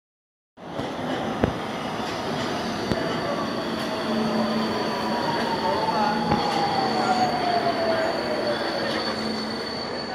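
Metro train running into an underground station and slowing to a stop: a steady rumble with a whine that falls in pitch as it brakes, a thin steady high tone, and a few sharp clicks.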